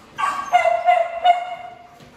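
A chorus of kennelled dogs barking and howling, setting off just after the start, loud through the middle and fading toward the end.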